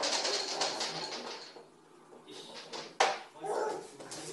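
Small push-along toy clattering as it is pushed over a hard floor, in two bursts that each open with a sharp knock: one right at the start, one about three seconds in.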